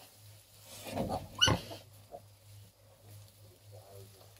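Newborn piglet giving a short, sharp squeal that rises in pitch, about a second and a half in, just after a lower call, as the piglets are nudged onto the sow's teats to nurse. A low steady hum runs underneath.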